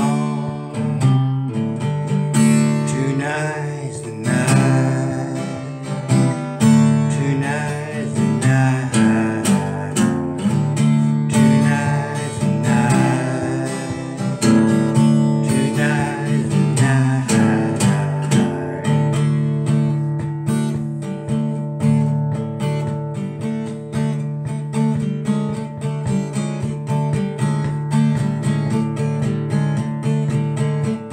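Strummed Tanglewood cutaway acoustic guitar with a harmonica in a neck rack played over it, an instrumental break with no singing.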